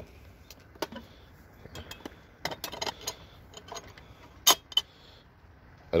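Scattered light clicks and clinks as a die-cast miniature Snap-on roll cab is handled, with one sharper click about four and a half seconds in.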